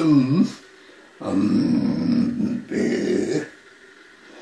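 A monk reciting a Buddhist prayer text aloud in a low chanting voice. One phrase ends about half a second in, and after a pause the recitation resumes a little past a second, breaking off briefly near three seconds before stopping.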